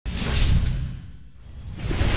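Whoosh sound effects for an animated title graphic: a whoosh with a deep boom at the start that fades away over about a second, then a second whoosh rising near the end.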